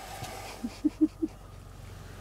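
Four short, low vocal sounds in quick succession about a second in, over a faint steady low hum.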